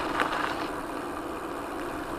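Steady rolling noise of e-bike tyres on a gravel path. It turns smoother and less hissy under a second in as the bike rolls onto asphalt.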